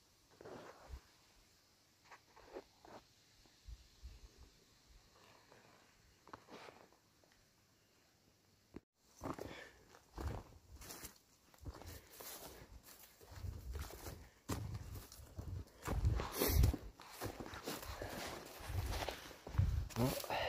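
Faint scattered rustles and small clicks at first. From about nine seconds in, footsteps tramp through tall grass and brush, growing louder toward the end.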